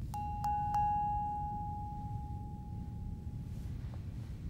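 A bell-like chime struck three times in quick succession on one pitch, ringing out and slowly fading over about three seconds.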